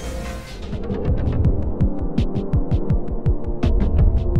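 Edited-in sci-fi blaster sound effects: a low hum, then from about a second in a fast run of short zaps, each a quick downward sweep, about five a second, as the toy's blaster is shown firing its rays.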